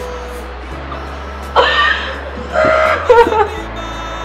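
A woman sobbing in three short bursts in the second half, over background music with a steady low bass.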